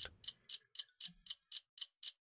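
Stopwatch ticking: light, crisp clicks at an even pace of about four a second.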